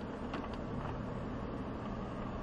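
Steady low drone inside the cab of a Ford Raptor pickup crawling downhill over loose dirt at about 3 mph on its low-speed crawl control, with no gas or brake applied by the driver.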